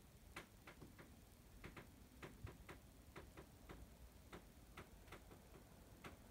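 Faint, irregular light clicks, a few a second, over near silence.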